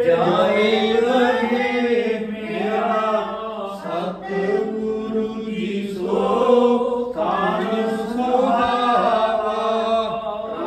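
A group of voices chanting a Sikh devotional hymn together, unbroken throughout.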